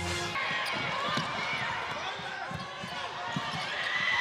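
Basketball court sounds: a ball bouncing on a hardwood floor in a few knocks about a second apart, with sneakers squeaking and faint voices in a large hall.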